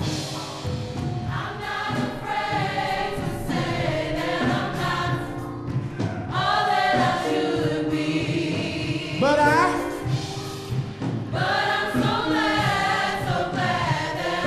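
Gospel choir singing with instrumental backing, many voices in swelling phrases over steady held notes.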